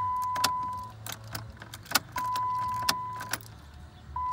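Ignition key being cycled off and on in a 2008 Dodge Nitro to call up stored engine trouble codes on the instrument cluster. The key clicks in the ignition and the keys on the ring jangle, while a steady electronic warning tone from the dash stops about a second in and sounds again for about a second in the middle.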